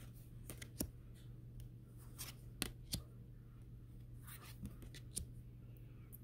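Tarot cards being flipped through by hand, each card slid off the front of the deck and tucked behind with a faint, crisp flick; about ten flicks, irregularly spaced.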